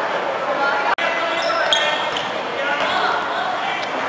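Futsal ball bouncing and being kicked on the hard floor of a sports hall, among shouting voices that echo in the hall. The sound cuts out for an instant about a second in.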